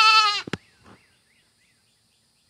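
Goat kid bleating: one long, high, wavering call that ends about half a second in, followed by a short click. It is a kid newly separated from its mother, calling.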